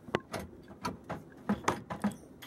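Locked wooden cabinet drawer being tugged by its metal pull, knocking and rattling against its lock about five times in quick, uneven succession.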